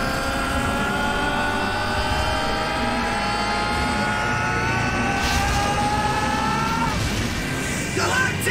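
Anime power-up sound: a long, steadily rising whine that builds for about seven seconds and then cuts off, with a brief rush of noise partway through.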